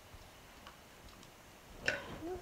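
Silicone spatula stirring thick tomato sauce in a slow-cooker crock: a few faint ticks, then a sharper click near the end.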